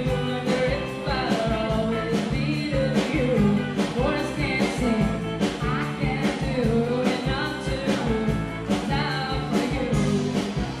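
Live band playing a pop-rock song: a woman singing over acoustic guitar and electric bass, with a steady beat.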